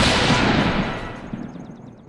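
Closing hit of a channel logo intro sting: a single loud crash just before the start, its long reverberant tail dying away over about two seconds, with a faint rapid high ticking shimmer in the second half.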